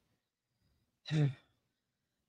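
A woman's short, breathy sigh about a second in.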